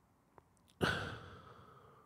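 A man's sigh close to the microphone: a faint click, then a sudden breath out a little under a second in that fades away over about a second.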